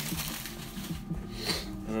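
Soft background music with steady, held low notes, under light rustling of packaging as hands rummage in a cardboard box.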